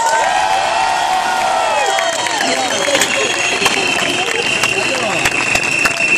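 Crowd of protesters cheering and applauding in response to a greeting from the stage, with shouts at the start and scattered clapping. From about halfway, a long steady high whistle sounds over the crowd.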